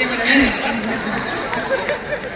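A man speaking over a public-address system in a large arena, with audience chatter around him.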